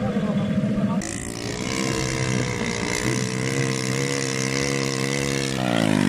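Small ATV engine running at a steady speed, its pitch falling near the end.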